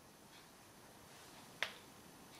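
Quiet room tone broken by one short, sharp click a little past halfway.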